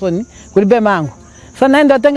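A woman speaking in short phrases, over a steady high-pitched insect trill that goes on underneath without a break.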